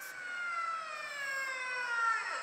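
Recorded whale call played back: one long call with a stack of overtones, falling slowly in pitch.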